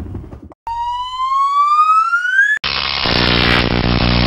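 Logo intro sound effect: a synthetic tone rising steadily in pitch, siren-like, for about two seconds, then cut off abruptly by a loud, dense burst of sound with steady low tones.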